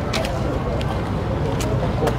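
Outdoor street ambience: indistinct background voices over a steady low rumble, with a few short sharp clicks.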